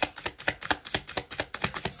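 A deck of tarot cards being shuffled by hand: a quick, uneven run of crisp clicks and slaps as the cards riffle against each other, about seven a second.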